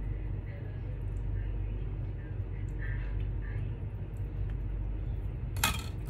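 A spoon working through fruit cocktail in a plastic container: faint scrapes and soft clinks over a steady low hum, with a brief louder clatter near the end.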